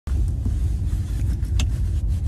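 Road and engine noise inside a moving car's cabin: a steady low rumble, with one brief click near the end.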